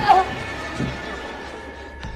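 A woman's short, strained cry that falls in pitch near the start, as a breathing tube is pulled from her throat, over a dark music score with a steady held tone.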